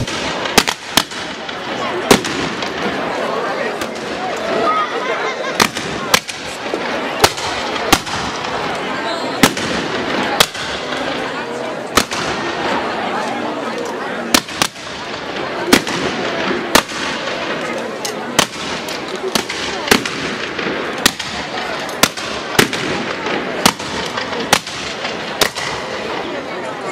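Shotguns firing repeatedly at a hanging rag-doll effigy: dozens of sharp blasts at irregular intervals, sometimes two or three in quick succession, over the steady chatter of a large crowd.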